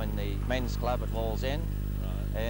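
A man speaking a few short phrases, over a steady low hum.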